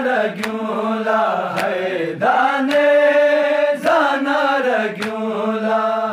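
A man's solo voice chanting a Balti noha, a Shia lament, in long held notes that bend and fall between phrases. A sharp beat sounds about once a second.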